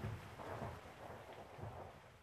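Faint low rumbling under a steady rain-like hiss, easing off toward the end.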